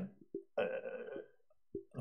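A man's short throaty vocal sound, held steady for about half a second, with a brief low blip just before it and another near the end.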